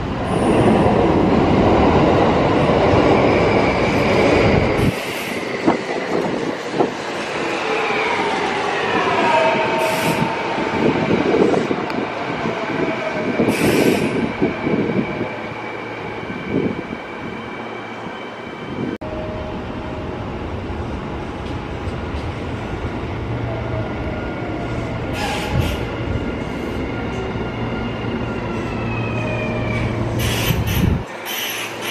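Kintetsu electric commuter trains: one runs past loudly at first, then trains brake into the station with a motor whine falling in pitch as they slow. Short high brake and wheel squeals come at three points.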